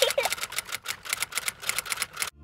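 Typewriter key clicks, a rapid uneven run of sharp clicks, several a second.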